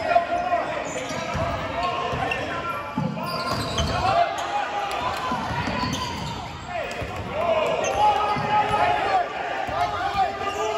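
Basketball being dribbled on a hardwood gym floor, with short squeaks of sneakers as players run and cut, echoing in a large gym.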